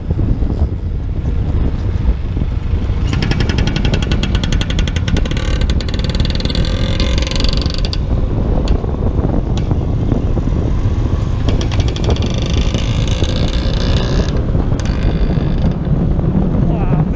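Motor scooter engine running while riding, under heavy wind rush on the microphone. A fast, evenly pulsing buzz rises in the engine note from about three to eight seconds in and again from about eleven to fourteen seconds.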